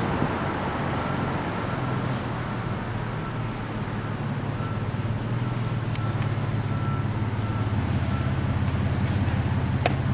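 Steady low hum of a car's engine and road noise heard from inside the cabin, with a single click near the end.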